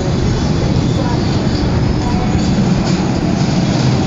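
Motorized retractable roof panel running as it slides, a loud steady rumble.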